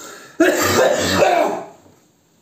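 A man's stifled laughter into his hand, breaking out about half a second in as two loud coughing bursts and fading out about a second later.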